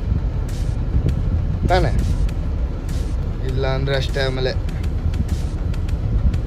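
Steady low rumble of a moving sleeper bus's engine and road noise, heard inside the cabin.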